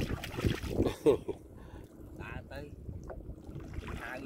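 Water splashing and dripping as a gill net is pulled by hand out of the water over a wooden boat's side, busiest and loudest in the first second and a half.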